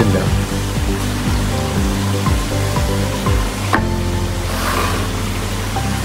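Small electromagnetic aquarium air pump running with a steady low buzz. About four seconds in there is a click and the buzz changes in tone.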